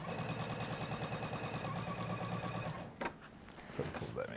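Domestic electric sewing machine stitching a seam at speed, a fast, even run of needle strokes that stops just under three seconds in. A single click follows about a second later.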